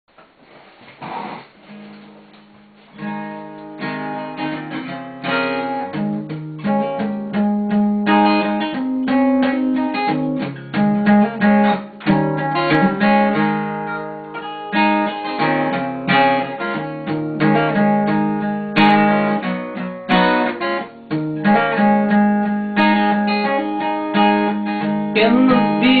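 Cutaway acoustic guitar playing an instrumental intro of picked and strummed chords, with no voice, starting about three seconds in after a brief rustle.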